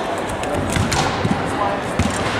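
Crowd chatter echoing in an indoor track arena, with several sharp knocks and low thuds from about half a second in.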